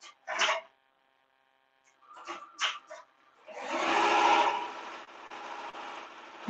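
Tajima multi-needle embroidery machine driving its hoop frame into position: a motor whine that swells up past the halfway point and fades over about a second and a half, after a few short handling sounds.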